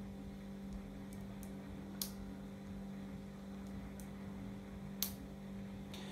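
Quiet room tone with a steady low hum, broken by two sharp short clicks about two and five seconds in and a few fainter ticks.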